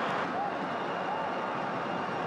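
Stadium crowd at a football match: a steady din of many voices, with a couple of faint short calls standing out.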